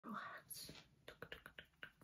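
Soft ASMR whispering close to the microphone, with a breathy hissing 's' in the first half-second. This is followed by a quick run of about six short, clicky mouth sounds.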